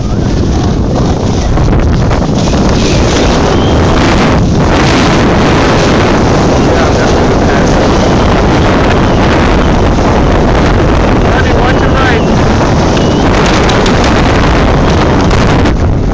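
Loud, steady wind rushing over the microphone of a camera carried down a ski slope at speed, mixed with the scrape of sliding over packed snow.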